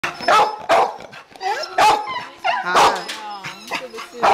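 Dogs barking repeatedly, a run of loud sharp barks with whining in between.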